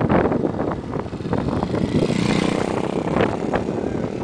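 Wind buffeting the microphone of a camera on a moving bicycle, with road rattle throughout. About two seconds in, a motor vehicle's engine briefly joins it.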